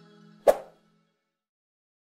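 A single sharp pop-like click sound effect about half a second in, over the last faint tail of fading outro music.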